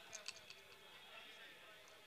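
Near silence: faint open-air ground ambience, with a few soft clicks in the first half-second.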